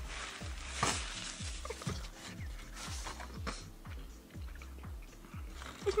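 Close-up chewing and mouth sounds of a person eating, a series of irregular wet smacks and bites, with light background music underneath.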